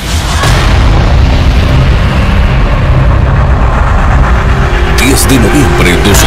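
Explosion sound effect: a loud, sustained low rumble that starts suddenly, with sharp crackles from about five seconds in.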